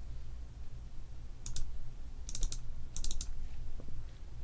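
Short clicks from a computer mouse and keyboard: a pair about one and a half seconds in, then two quick runs of about four clicks each. A steady low hum sits under them.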